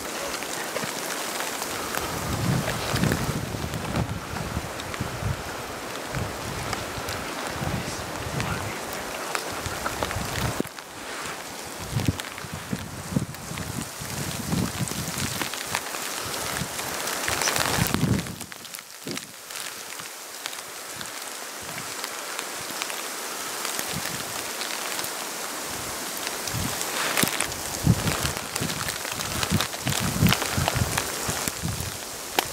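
Steady rain falling, with many small drops pattering on rain gear and brush.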